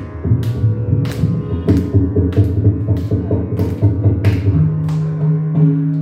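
Carnatic mridangam playing, with evenly spaced strokes about one and a half a second over a steady low drone. A held note comes in about four and a half seconds in.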